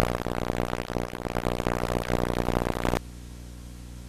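Loud burst of TV channel audio from a CONMEBOL TV promo, a rough, buzzy sound that cuts off suddenly about three seconds in as the channel changes. A steady low electrical hum runs underneath and carries on after it.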